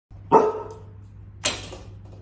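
A large dog barking twice at its own reflection in a glass door: a loud, short bark near the start, then a breathier second bark about a second later.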